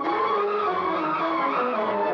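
Old film soundtrack: a dense, rushing, noisy sound mixed with orchestral tones, one of which slides down in pitch partway through. This follows directly on the end of a sung song.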